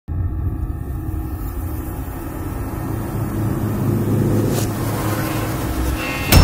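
Low cinematic rumble that slowly builds, with a short whoosh about four and a half seconds in: the sound design of an animated logo intro.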